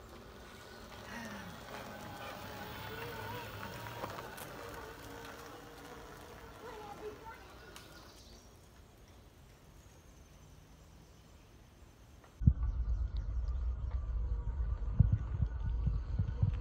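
Faint voices over a quiet outdoor background, then, after a sudden jump about twelve seconds in, a loud low rumble.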